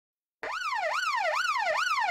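An alarm siren wailing rapidly up and down, nearly three rises a second, each a quick rise and a slower fall. It starts suddenly about half a second in.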